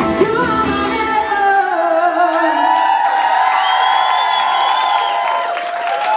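End of a live pop-rock song: the band's final chord, with drums and bass, stops about a second and a half in. A high held voice rings on over crowd cheering and whoops.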